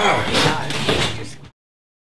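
A door banging shut along with footsteps, cut off abruptly into dead silence about one and a half seconds in.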